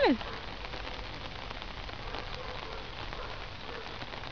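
Steady rain falling, a constant hiss of drops on surfaces.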